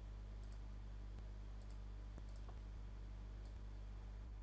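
A few faint, scattered computer mouse clicks, the sound of on-screen chart annotations being drawn, over a steady low electrical hum.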